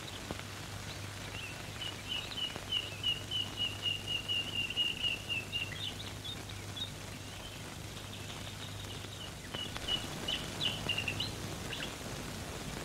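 A bird calling in a fast run of short, high chirps, about four a second, for several seconds, then a shorter run near the end, over a low steady hum.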